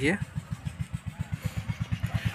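A small engine running steadily, a low even putter of roughly fourteen beats a second.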